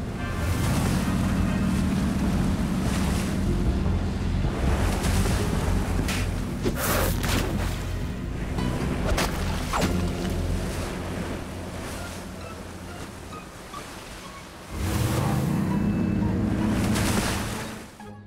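Cartoon soundtrack of a motorboat engine running steadily over sea waves, mixed with background music. The engine drone fades away, then near the end an engine comes in with rising pitch and holds.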